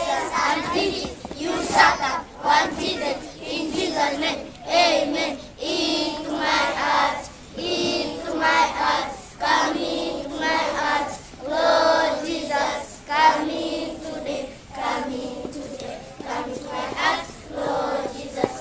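A large group of schoolchildren singing a prayer together in unison, in short phrases about a second long with brief pauses between them.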